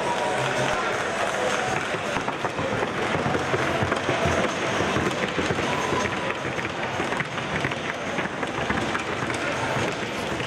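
Quick, even hoofbeats of a young Colombian filly trotting in the show arena, heard over crowd chatter and background music in a large hall.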